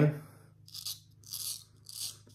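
Economy Supply 800 straight razor scraping through lathered stubble on the cheek: three short strokes, each a crisp scrape.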